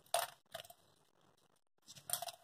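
Small cat toy ball being shaken in the hand, giving two short metallic jingles about half a second apart, the first louder.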